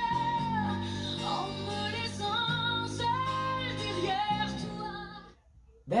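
A woman belting a held note with vibrato over a live band, played through a TV, then singing on through further notes; the music cuts off about five and a half seconds in.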